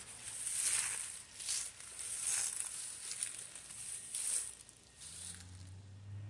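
Dry fallen leaves crunching and rustling underfoot in a handful of separate bursts, about a second apart. A faint low hum comes in near the end.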